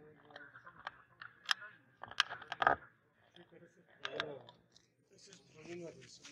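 Carom billiard shot: a cue strike followed by a few sharp clicks of the balls meeting each other, the loudest a little under three seconds in, with faint voices in the room.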